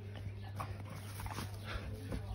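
A dog whimpering, a few short high whines, over a low steady hum.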